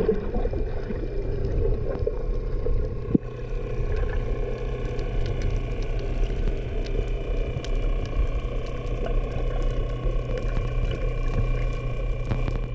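Underwater sound of a boat motor's steady drone carried through the water, with scattered sharp clicks and a single louder knock about three seconds in.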